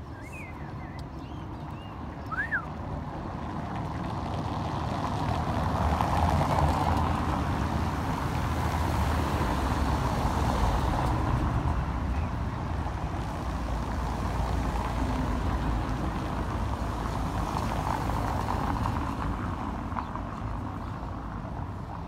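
Road traffic on a cobblestone street: cars running and their tyres rumbling over the cobbles, swelling as a vehicle passes close about a third of the way in, then continuing steadily. A single short chirp about two seconds in.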